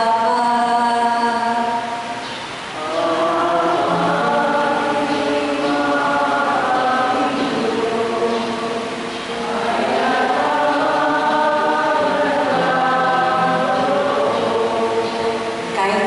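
A woman singing a slow, chant-like liturgical melody into a microphone, with long held notes and short breaks about two and a half seconds in and again around nine seconds; the sung responsorial psalm following the first reading at Mass.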